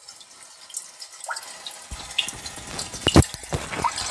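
The 'rainy day' ambient rain recording from the Hyundai i20's built-in nature-sounds feature, playing through the car's speakers: a hiss of rain with scattered drips that grows louder. One sharp click stands out a little after three seconds.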